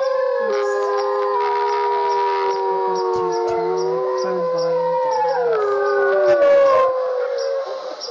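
Several dogs howling together: long, loud, overlapping howls at different pitches that waver and dip slowly and keep going without a break.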